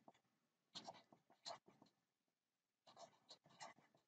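Black felt-tip permanent marker writing on paper in short, faint strokes: a few about a second in, and another run near the end.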